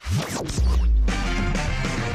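Electronic TV station bumper jingle for the end of a commercial break. It opens with quick swooshing, scratch-like sweeps, then a deep bass note comes in about half a second in and the music carries on.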